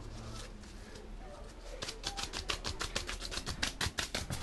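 A rapid run of light clicks and rustles starting a little under two seconds in, like small objects being handled, after a quieter stretch.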